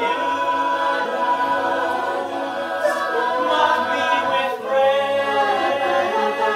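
Mixed men's and women's a cappella group singing a musical-theatre song in close harmony, with sustained chords over a low bass line.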